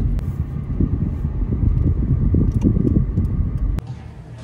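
Low, steady rumble of road and engine noise inside a moving car's cabin. It cuts off suddenly near the end.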